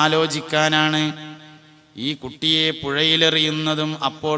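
A man's voice reciting in a chanted, melodic style, holding long steady notes; it fades out about a second in and resumes about two seconds in.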